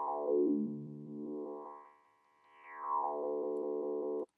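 A sustained sampled bass note played on Ableton Live's Simpler, its tone shifting as a resonant band-pass filter is swept across it. The note drops out briefly just after the middle and comes back.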